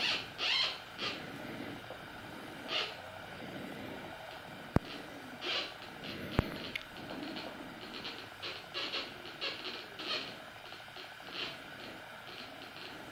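Homemade Minipulse Plus pulse induction metal detector sounding short, repeated signal bursts as a metal box is moved toward its search coil: the detector is responding to the target. Two sharp clicks sound in the middle.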